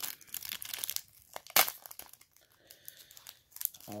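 Foil trading-card pack wrapper crinkling and crackling as it is worked open by hand, with irregular crackles and one sharp crack about a second and a half in.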